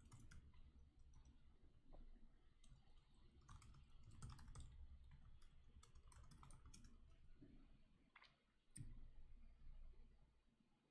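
Faint typing on a computer keyboard: irregular keystrokes in short runs with brief pauses, a little louder near the end.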